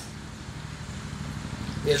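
A steady low background hum fills a pause in a man's speech through a public-address system, and his voice resumes near the end.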